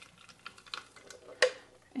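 Thick blended squash-and-cashew sauce pouring from a blender jar into a pot, a faint soft sound with small ticks, and one short sharp knock about one and a half seconds in.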